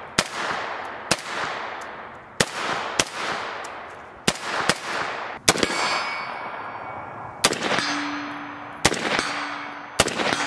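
About nine shots from a suppressed .30-caliber rifle fitted with a HUXWRX HX QD Ti titanium suppressor, fired at an irregular pace of roughly one a second. Each shot is a sharp crack followed by a fading echo. Over the last few seconds a low steady ringing, like struck steel, sounds after the shots.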